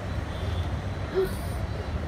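A steady low rumble of background noise, with a child's single short word about a second in.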